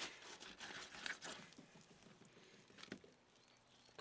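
Faint, irregular soft clicks and wet handling sounds of a hogfish fillet being cut and peeled away from the rib cage with a fillet knife.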